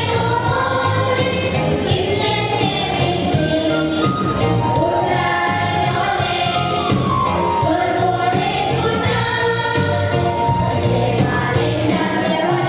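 A children's choir singing a song at microphones, over an instrumental backing.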